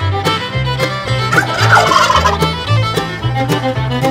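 A wild turkey gobbles once, a short rattling call about halfway through and the loudest sound here, over fiddle music with a steady beat.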